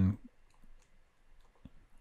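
A few faint, scattered clicks of a computer mouse over quiet room tone.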